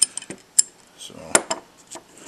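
A bent 8-inch steel adjustable wrench clinking and knocking as it is handled on a wooden tabletop: a few sharp metal knocks, the loudest about half a second in and another about a second later.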